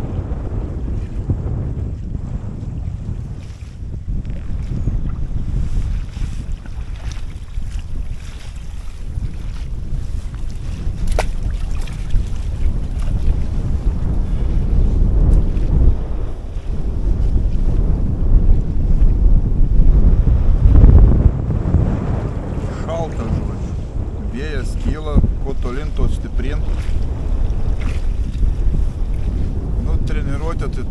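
Wind buffeting the microphone in a loud, uneven low rumble.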